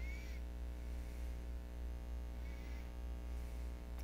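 Steady low electrical hum in a quiet room, with a couple of faint brief squeaks.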